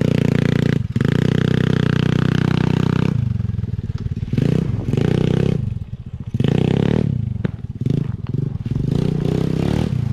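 Small kids' quad bike engine running under steady throttle as it ploughs through a muddy water-filled bog hole on oversized 25-inch tyres, with splashing, and a brief dip about a second in. After about three seconds the throttle comes on and off in short bursts as the quad rides on.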